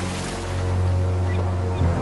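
Cartoon sea ambience: the rush of ocean waves over a low, sustained drone from the background score, the low note shifting near the end.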